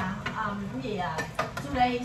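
Dishes and cutlery clinking and knocking as food is served at a dinner table, with several sharp clinks, under snatches of conversation.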